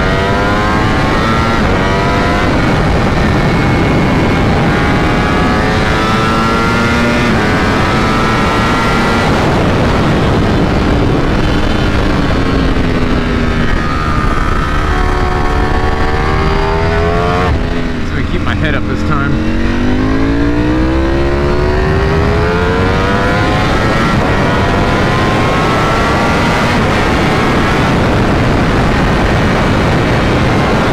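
Ducati Panigale V4 SP's 1103 cc V4 engine accelerating hard through the gears, the revs climbing again and again and dropping back at each quickshifted upshift. Over a second or two near the middle the revs fall well away, with a few sharp pops from the exhaust, then climb again. Wind rush on the microphone underneath.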